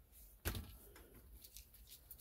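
A single sharp click about half a second in, then a few faint ticks, as plastic wiring-harness connectors are handled at the dash.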